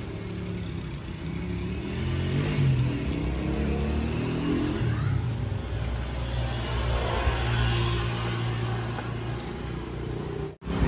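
A motor vehicle engine running nearby, its pitch rising about two seconds in and then holding fairly steady.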